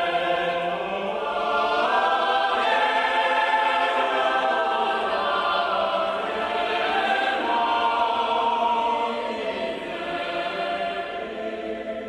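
A choir singing slow, sustained chords that shift pitch every few seconds, growing a little quieter near the end.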